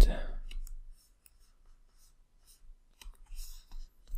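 A few faint, short clicks: a cluster in the first second and another in the last second, with near silence between.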